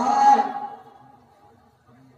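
A man speaking, his phrase trailing off about half a second in, then a pause with only faint background sound.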